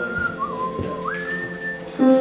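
A person whistling a short phrase. One held note steps down to a lower note, then slides up to a higher held note, with the band's music faint underneath.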